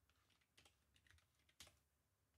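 Faint computer keyboard keystrokes: a few scattered clicks, the loudest about one and a half seconds in.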